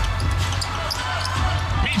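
Live NBA game sound in an arena: a steady crowd murmur, a basketball being dribbled on the hardwood court, and short sneaker squeaks.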